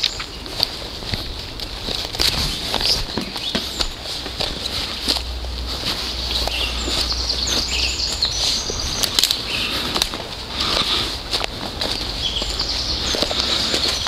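Footsteps rustling and crunching through dry fallen leaves and snapping small twigs on a forest floor, with faint high bird chirps now and then.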